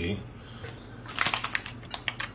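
Crinkles and clicks of a plastic food pouch being picked up and handled, a short cluster past the middle and one more near the end, over a low steady hum.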